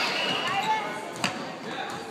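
A basketball bouncing on a gym floor, one sharp bounce a little over a second in, over the voices of people talking and calling out.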